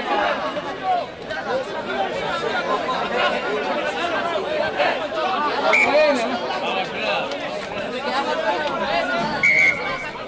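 Many voices shouting and calling over one another around a rugby pitch, with a short, steady high-pitched tone near the end.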